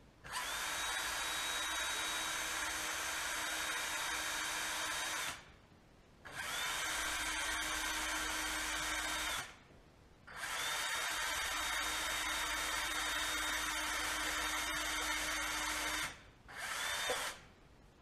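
Cordless drill boring a hole into the end of a thin wooden dowel, run in four bursts: three long runs of several seconds and a short one near the end. Each run starts with a quick rising whine as the motor spins up, then holds steady.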